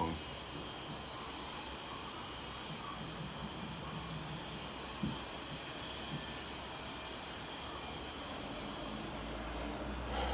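Steady room noise: an even hiss with a faint high-pitched whine, broken only by a couple of soft clicks about five and six seconds in.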